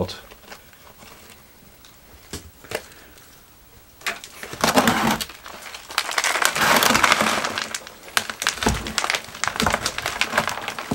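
Black plastic nursery pot crackling and crinkling as it is gripped, squeezed and worked to free a stuck rootball. It is quiet at first with a couple of clicks, then crackles loudly from about four seconds in, with a dull knock near the end.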